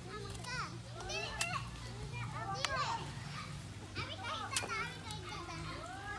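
Children's voices chattering and calling out, high-pitched and rising and falling, with a few sharp knocks in between.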